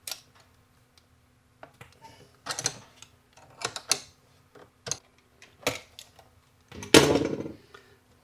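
Scattered small metal clicks and taps of hand work on bolted cable lugs and wiring inside an opened battery case, with a louder clatter about seven seconds in.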